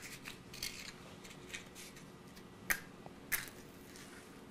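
A paper match is torn from a matchbook and struck on its striker: light rustles and clicks, then two short sharp scratches about half a second apart near the end, and the match lights.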